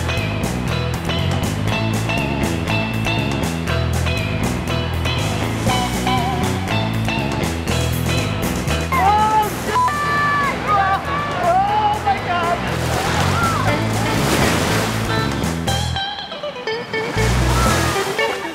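Background music with a steady beat, which drops out briefly near the end before a low hit.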